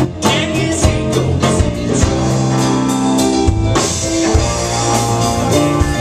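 Live rock band playing: electric guitar, bass guitar, drum kit and keyboard.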